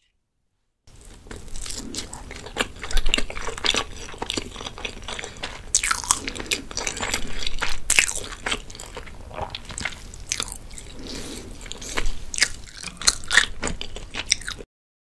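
Close-miked chewing of salmon sushi: wet, sticky mouth clicks and soft crunches of rice and fish. It starts about a second in, in quick irregular clusters.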